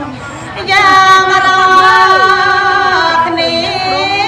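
A woman singing Khmer smot, Buddhist chanted verse, into a microphone: after a short quieter phrase she holds one long ornamented note from about a second in until near the end.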